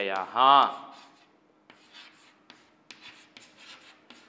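Chalk writing on a chalkboard: faint scratching with short, sharp taps as the chalk forms letters.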